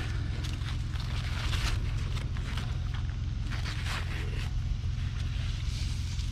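Large squash leaves rustling and crackling in short, irregular bursts as they are pushed aside and handled by hand. A steady low rumble runs underneath.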